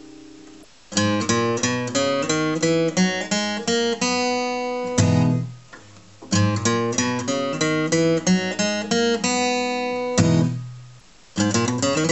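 Acoustic guitar with a capo at the fourth fret, fingerpicked: a quick run of single notes that ends on a chord left ringing to die away, played twice over, with a third pass starting near the end.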